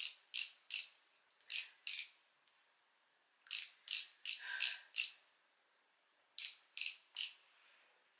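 Maybelline Instant Age Rewind Eraser concealer's twist-up barrel being turned to push concealer onto its sponge tip. It gives sharp ratchet clicks, about three a second, in short runs of two to five with pauses between.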